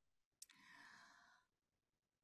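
Near silence, with a small click and a faint breath about half a second in, as a speaker draws breath before answering.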